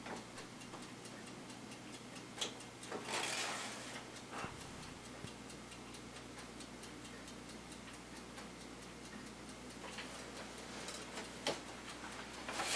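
Faint, rapid, even ticking in a quiet small room, with a few brief soft rustling noises.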